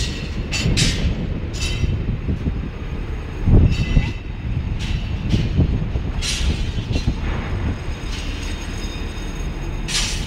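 Crane boom-hoist winch running as the boom is lowered, a steady low rumble with repeated high metallic squeals from the wire-rope drums and sheaves. A louder swell of rumble comes about three and a half seconds in.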